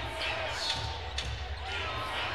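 A basketball dribbled on a hardwood court, three bounces about half a second apart, over the low background noise of a sparse arena.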